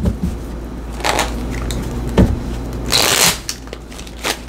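A small tarot deck shuffled by hand, in short bursts of card-on-card rustle about a second in and more strongly about three seconds in.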